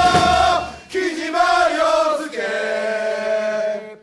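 Football supporters' player chant sung by a group of voices, with drum beats that stop about a second in. The voices then finish the last phrase without the drums, ending on a long held note that cuts off near the end.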